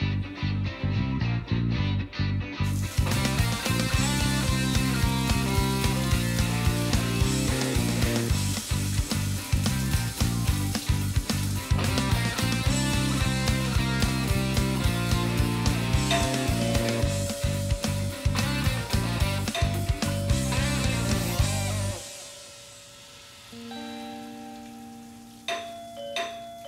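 Background music with a steady beat, which stops abruptly about 22 seconds in. Near the end a doorbell chimes.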